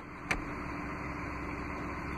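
A single sharp click from the Stow 'n Go seat and floor-bin hardware as it is handled, about a third of a second in. It is followed by a steady low hum with a faint constant tone.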